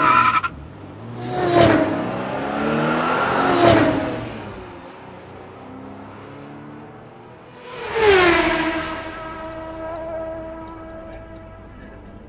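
Race cars passing close by in quick succession, each engine's pitch dropping sharply as it goes past. There are three loud pass-bys in the first four seconds and another about eight seconds in, after which that car's engine note holds and fades away.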